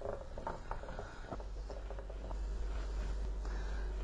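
A wooden spoon stirring in a metal soup pot as a yogurt mixture is stirred into simmering soup, with a few faint clicks and scrapes of the spoon in the first second or so. A low steady hum sets in after that.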